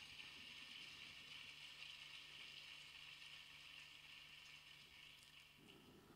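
Near silence: room tone with a faint steady hiss and a low, even hum.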